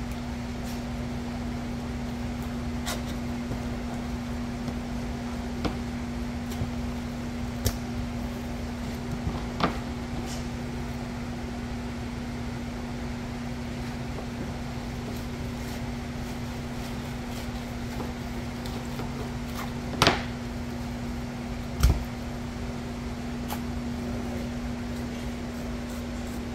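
A steady machine hum, like a fan or cooling unit running, holds one constant tone. Over it come a few faint clicks and knocks from knife and hand work on a plastic cutting board, with two sharper knocks near the end.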